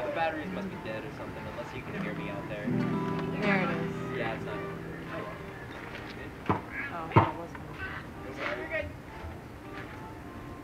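Acoustic guitar strings plucked and left to ring during a pre-song check and tuning, under background voices. Two sharp knocks about six and a half and seven seconds in, the second the loudest sound.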